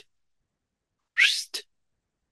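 A man's short rising whooshing mouth noise, made in two quick parts about a second in, acting out words going in one ear and out the other.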